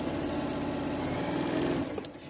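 Janome Continental M7 computerized sewing machine stitching a seam at a steady speed.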